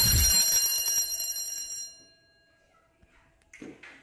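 A single loud bell-like ring with a low thump at its onset, fading away over about two seconds.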